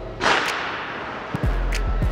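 A sudden loud whooshing burst of noise that fades away over about a second, followed by a low thump, under quiet background music.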